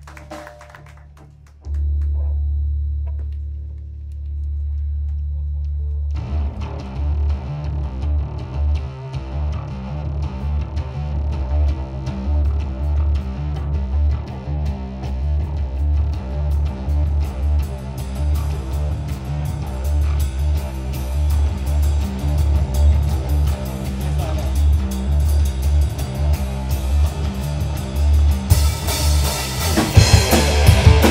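Live rock band starting its set. A long low guitar or bass note rings out about two seconds in. From about six seconds the electric guitars and bass play a steady rhythmic riff, and near the end the drum kit crashes in and the full band comes in louder.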